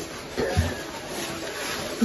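Quiet room sound with a brief, faint voice about half a second in.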